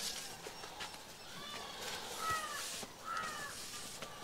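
Outdoor ambience with a bird giving short calls that rise and fall, in three bursts over a couple of seconds, and a soft knock about halfway through.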